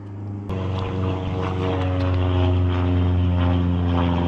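A steady engine hum at a constant low pitch, a motor running evenly without revving. It starts about half a second in.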